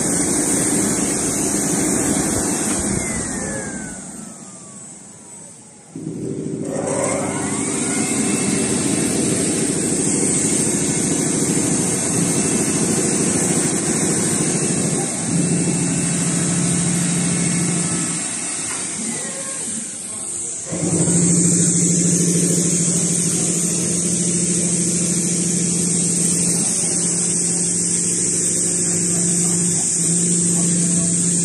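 Richpeace two-head perforation sewing machine running with a steady mechanical hum and hiss. About four seconds in its drive winds down with a falling pitch, then starts up abruptly about six seconds in with a rising pitch. It dips once more briefly near twenty seconds before running steadily again.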